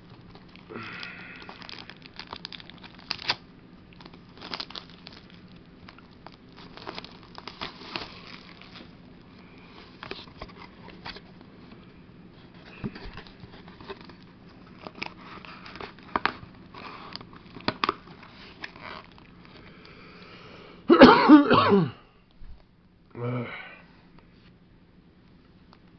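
Plastic shrink wrap crinkling and tearing as it is stripped from a cardboard trading-card booster box, with scattered clicks and rustles as the box is opened. Near the end, a loud cough, then a shorter one.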